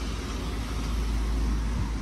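Parking-lot traffic noise: a steady low rumble of cars.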